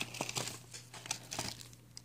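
Faint, scattered crinkling and rustling of a white paper seed envelope and the dried Thai basil plant inside it as the plant is pulled out, thinning out toward the end.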